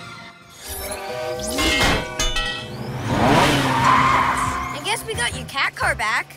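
Cartoon sound effects over background music: a whoosh with the mask-emblem transition, then a long rushing vehicle effect with a gliding pitch as the heroes' car moves, and a short voice near the end.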